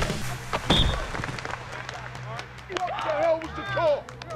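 A couple of sharp thuds near the start, then several football players yelling and cheering on the practice field, over a music track with a steady low bass.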